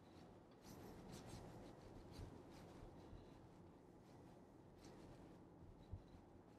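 Near silence: faint cabin noise of a moving car, with a few soft rustles and clicks, the last and sharpest one near the end.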